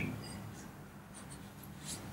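Faint, light scratching and a few small ticks over quiet room tone, with a slightly sharper tick near the end.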